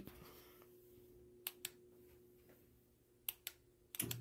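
Near silence with a faint steady hum, broken by two quick pairs of sharp clicks, one pair about a second and a half in and another near the end.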